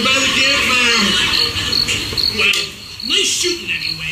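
Crickets chirping steadily, about three chirps a second, with a voice sounding underneath.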